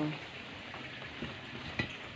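Hot dogs frying in hot oil in a pan: a steady sizzle, with a couple of light clicks in the second half.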